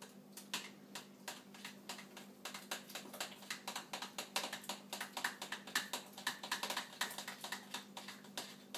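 Rapid clicking and tapping of hand-mixing in a bowl, a utensil knocking against the bowl as the Crisco, sugar and water mixture is beaten for akutaq. The clicks are sparse at first and come quicker from about two seconds in, over a low steady hum.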